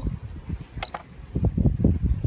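A single short, high beep with a click from a Centurion Vantage gate controller's keypad as a button is pressed, about a second in. From about a second and a half on there is a loud, uneven low rumble.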